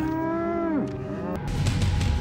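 A Hereford cow mooing once: a drawn-out, steady call that falls in pitch and stops just under a second in.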